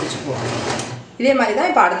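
Electric sewing machine running as it stitches fabric, stopping about a second in.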